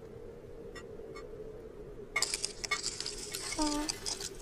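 A cartoon sound effect of scratchy crackling on pond ice as the cat steps out onto the frozen surface. It starts about two seconds in and lasts nearly two seconds. Near the end comes a short, questioning cat vocal sound, over a faint steady hum.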